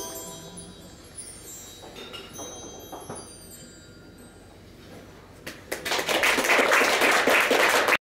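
Bar chimes (mark tree) ringing out and fading, with a few light strikes about two and three seconds in. About five and a half seconds in, audience applause starts and swells to become the loudest sound.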